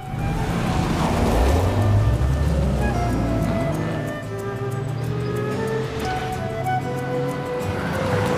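A sports car engine accelerating and driving past, rising in pitch and loudest in the first half, over background music with sustained tones.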